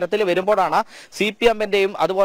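Speech only: a man speaking Malayalam in a news report, with a brief pause about halfway.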